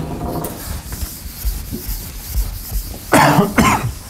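An eraser rubbing across a chalkboard as it is wiped clean, followed near the end by two loud coughs about half a second apart.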